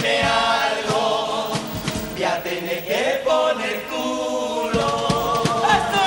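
Male murga chorus singing a sustained passage together over regular drum beats, ending on a long falling glide.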